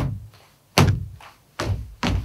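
A few people stamping their feet in unison on a hard floor as body percussion: three evenly spaced low stamps, about one every 0.8 s, the start of a right, left, right-left-right stamping pattern.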